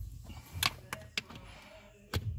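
A few faint, short clicks and taps over a low background hum.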